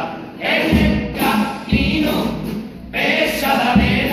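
A chirigota group singing a carnival cuplé together in unison, with Spanish guitars strumming and a bass drum striking a few heavy beats.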